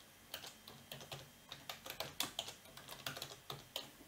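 Typing on a computer keyboard: a faint, irregular run of quick keystrokes.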